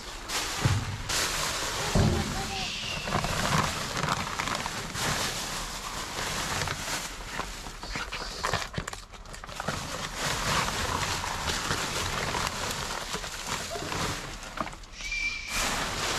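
Plastic trash bags, bubble wrap and paper rustling and crinkling as hands dig through the bags of a dumpster's contents, a continuous rummaging racket.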